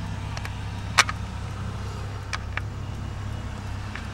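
Steady low rumble of a car's engine and road noise heard inside the cabin while driving. A single sharp click sounds about a second in, with two faint ticks later.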